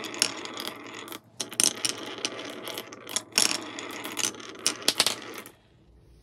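Many glass marbles rolling down the snaking grooves of two wooden HABA wave-slope boards: a dense clicking rattle of glass on beech wood and marble against marble. It pauses briefly a little after a second in and stops about half a second before the end.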